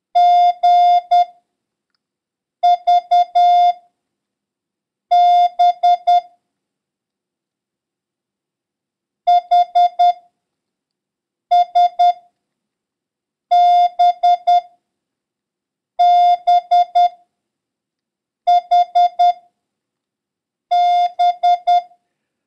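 Morse code practice tone sending single characters of a random copy run, mostly B's and H's, as groups of short and long beeps in one steady tone. There are about nine characters, each followed by a pause of a second or more, with one longer pause about a third of the way in.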